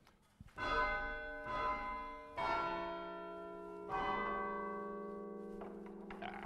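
Church bells chimed from a rope chiming frame, a hammer striking the side of each fixed bell. About five strokes come in the first four seconds, one bell at a time, each ringing on long and overlapping the next.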